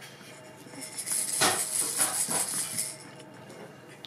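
A hanging rattle toy on a baby play gym, shaken by hand and jingling for about two seconds, starting about a second in.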